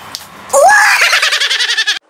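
A long, quavering human scream that starts about half a second in, rises in pitch and then slowly sinks, cut off abruptly at the end.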